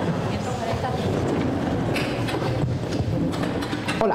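Indistinct murmur of several voices in a large hall, with a few light knocks and clicks about halfway through.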